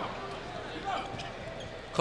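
Basketball arena ambience on a TV broadcast: a steady crowd murmur with court noise from live play, with a few faint short squeak-like tones about a second in.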